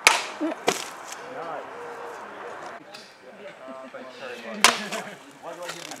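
A sword blade striking and cutting a plastic drinks bottle on a post: a sharp crack right at the start, with a second, smaller knock under a second later. Another sharp crack comes about four and a half seconds in.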